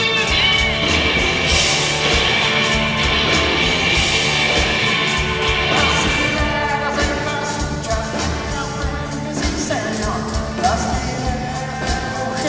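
A rock band playing live, with electric and acoustic guitars, drums and keyboard, and a man singing lead.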